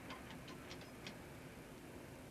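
A few faint clicks of fingers pressing the chrome buttons of a payphone keypad, dialling in a calling card's PIN, over a low steady hiss.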